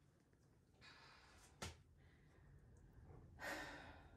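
Near silence, broken by a person's faint breath about a second in, a single click, and a sigh near the end.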